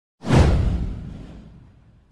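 Whoosh transition sound effect with a deep boom beneath it. It comes in suddenly a moment after the start, slides down in pitch and fades away over about a second and a half.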